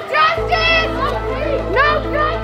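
High-pitched raised voices shouting over background music; the music, with a steady low bass and held notes, comes in about half a second in.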